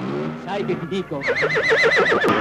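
A horse whinny, used as a sound effect: one pitched call with a fast quavering wobble in pitch, building about halfway through.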